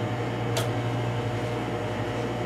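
Steady low mechanical hum of the room, with one faint click about half a second in as the room lights are switched off.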